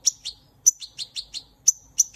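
A small bird chirping: a quick series of short, high chirps, about five a second.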